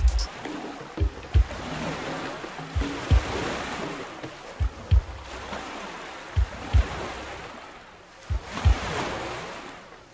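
Surf-like wash of ocean noise that swells and ebbs, with short low thumps in pairs, repeating about every two seconds.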